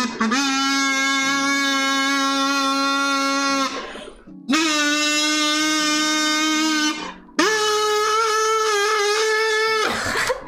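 Three long held notes sung into something with a buzzy, reedy tone. Each note lasts about three seconds at a steady pitch, the pitch steps up from one note to the next, and there are short breaks about four and seven seconds in.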